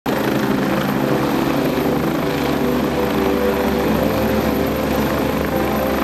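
AgustaWestland AW109 twin-turbine helicopter hovering low over the ground, its main rotor and engines giving a steady, unbroken drone.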